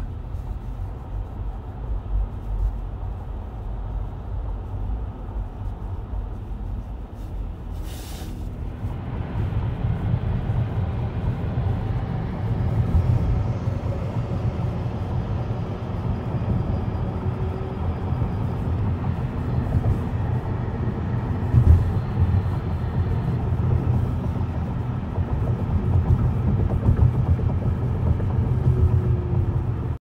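Steady road and tyre rumble inside a car moving at freeway speed. A click about eight seconds in, after which the rumble is louder.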